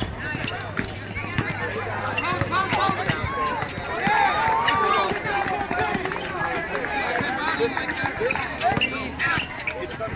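Outdoor pickup basketball game: many voices of players and spectators talking and calling out at once, with a basketball bouncing on the asphalt court and players' running feet.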